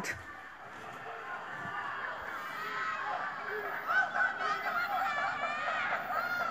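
Many distant voices shouting and calling out at once from across a neighbourhood, overlapping protest shouts that grow a little louder about two seconds in.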